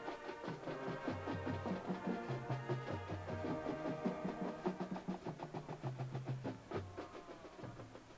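Girls' high school marching band playing, wind and brass chords over a bass line and drum strikes, the music winding down near the end.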